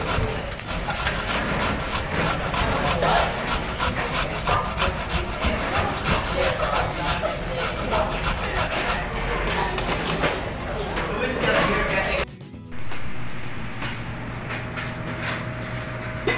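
A carrot being grated on a stainless steel box grater, rubbed fast in quick repeated rasping strokes of metal teeth through carrot. The strokes fade off in the last few seconds.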